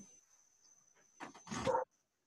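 A dog barks briefly about a second and a half in, a short double sound with the second part louder.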